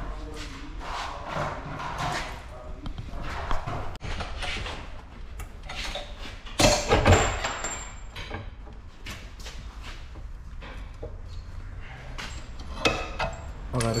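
Hand tools clinking and knocking on metal under a car as its front suspension is worked on. The knocks come irregularly, with a louder clatter and a brief metallic ring about seven seconds in.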